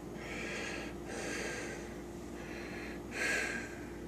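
A person breathing close by: several soft, hissy breaths, the strongest about three seconds in, over a faint steady hum.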